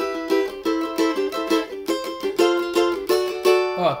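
Cavaquinho strummed in a steady rhythm, about four strokes a second, changing chord twice; the last chord is left ringing near the end. A D chord is among them, which falls outside the C major harmonic field and clashes with the C major chords.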